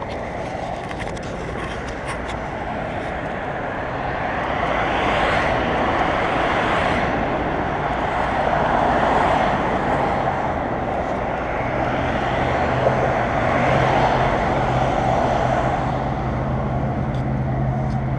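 Wind rushing over an action camera's microphone, with tyre and road noise, while riding a bicycle along a sidewalk; the rushing swells and eases in waves. A low steady hum joins about two-thirds of the way through.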